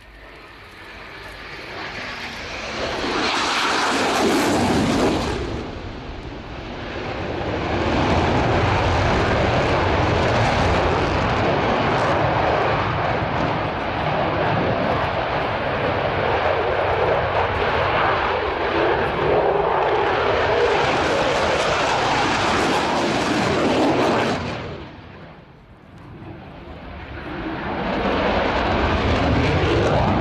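Eurofighter Typhoon's twin EJ200 turbofan engines: loud jet noise that swells over the first few seconds, stays loud and hissing through the turning display, falls away sharply about 25 seconds in, then builds again near the end.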